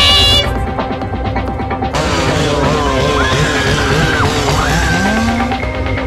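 Loud music with a heavy low rumble; a high wavering sound cuts off about half a second in, and wavering, sliding tones follow from about two seconds in.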